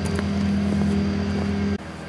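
A steady low mechanical hum, like a motor or engine running, that cuts off suddenly near the end.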